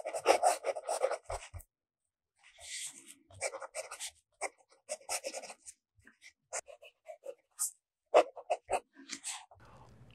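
Fountain pen nib scratching across reporter's notebook paper in short, irregular strokes, with brief pauses, as cursive handwriting is written.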